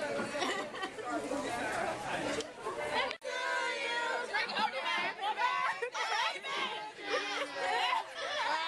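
Several people talking and calling out over one another, a lively group chatter. It breaks off abruptly about three seconds in and picks up again with a close group of voices.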